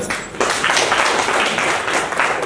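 Hand clapping, applause from a group, starting about half a second in.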